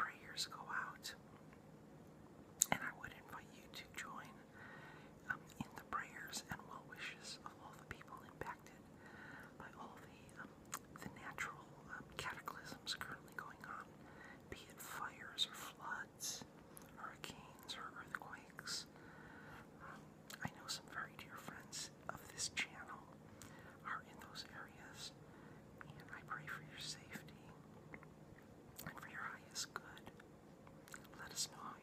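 A person whispering quietly, with small sharp clicks between the phrases.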